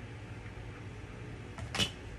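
A single short, sharp click or knock near the end, over a low steady room hum.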